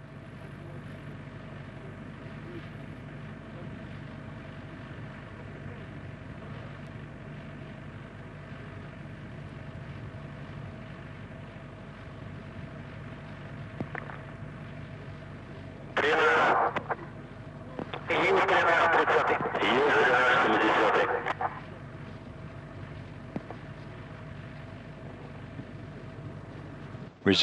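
Steady low hum from the launch-pad audio feed as the fuelled Soyuz-2.1a stands on the pad. Two-thirds of the way in, a voice speaks twice, once briefly and then for about three seconds.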